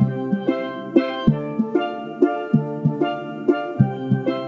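Instrumental pop music: a repeating riff of bright, pitched notes that strike and quickly fade, a few per second, over a low drum beat.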